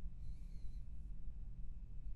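Steady low hum of the recording's background noise, with a faint, short whistle-like tone about a quarter of a second in.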